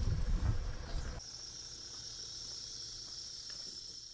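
A low rumbling noise for about the first second, then a steady, high-pitched chorus of insects.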